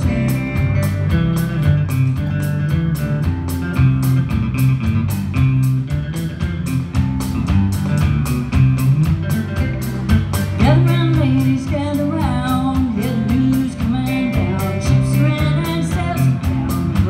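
Live band playing an instrumental stretch of a rock cover, with electric bass, electric and acoustic guitars over a steady beat; a lead line bends in pitch around ten seconds in.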